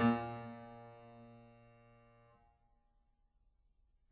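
A single piano chord struck and left to ring, fading, then damped off abruptly a little over two seconds in, leaving near silence.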